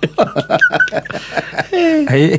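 Two men chuckling and laughing in a run of short breathy bursts.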